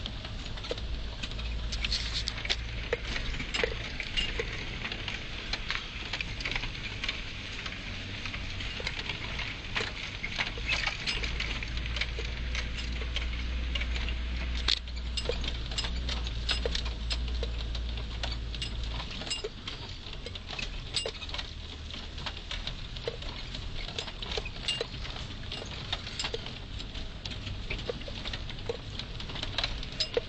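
Four-wheel-drive vehicle driving slowly over a rough dirt trail: a low engine and road rumble under constant irregular rattling and clattering from the body and loose gear as it goes over bumps. The low rumble is heavier for the first two-thirds, then eases.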